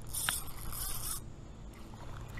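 Spinning fishing reel buzzing for about a second, then falling quiet, while a small river smallmouth bass is being played on the line.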